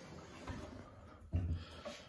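Faint handling noise from the wooden hood door of a longcase clock being tried by hand, with a single light click about half a second in.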